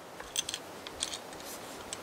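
Faint scattered clicks and light rattles of an AR-15 rifle being handled and brought up to the shoulder; no shot is fired.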